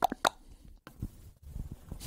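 Soft mouth clicks and lip smacks into a close-held microphone during a thinking pause, with a couple of dull low thumps about a second in and near the end.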